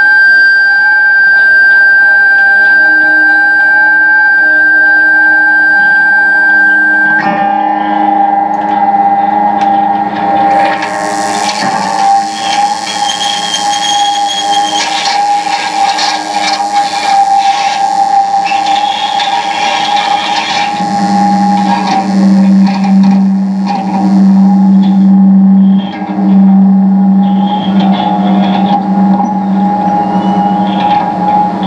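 Experimental noise music from an electric guitar and a chain of effects pedals: layered steady drones and tones. A high held tone cuts off suddenly about seven seconds in, a wash of hiss comes in a few seconds later and drops away about five seconds before the end, and a low hum pulses on and off over the last nine seconds.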